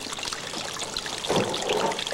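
Water running steadily from a garden hose and trickling and splashing onto a fish-cleaning bench as fish are rinsed, a little louder for a moment about a second and a half in.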